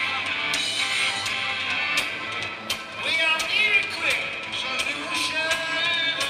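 Live rock band playing over a PA: electric guitars, drums and keyboard, with regular drum hits.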